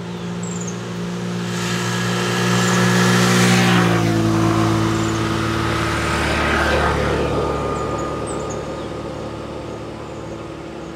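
A motor vehicle drives past, its engine and tyre noise swelling to a peak about three and a half seconds in, where the engine note drops in pitch as it passes, then fading away. The noise swells again near seven seconds before dying down.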